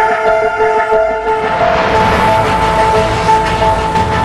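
Background news music: several held, sustained tones like a low drone chord, with a noisy swell rising in from about a second and a half in.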